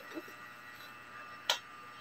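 A single sharp click about three quarters of the way through, over a faint steady room hum, with a brief soft vocal sound at the start.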